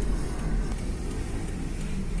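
Steady low rumble of a slow-moving car's engine and road noise heard from inside the cabin, with faint music mixed in.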